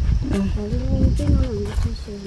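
A person's voice in drawn-out, sing-song speech, over a steady low rumble.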